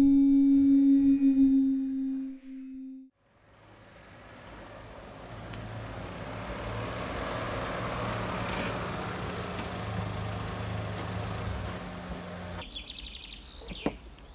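A loud, steady synthesized tone with overtones for about three seconds, then it cuts off. After a short gap, a car engine running steadily fades in under outdoor noise with a few faint bird chirps, and cuts off abruptly near the end.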